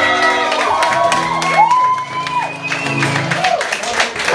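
Audience whooping and cheering, with several long calls that rise, hold and fall, over a held acoustic guitar chord that fades out near the end.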